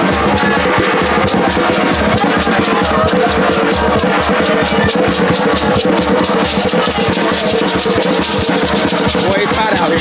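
Net-covered gourd rattles shaken and drums played in a steady, fast rhythm, with voices over the music.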